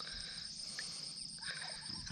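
Insects chirring in a steady high-pitched drone, with a fainter, rapidly pulsing chirr above it.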